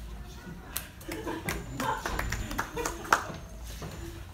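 A few scattered handclaps and voices from a small audience, with a sharp knock a little after three seconds.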